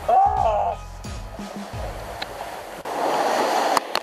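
A short vocal exclamation over background music, then, about three seconds in, a loud rush of seawater washing across a racing yacht's deck for about a second.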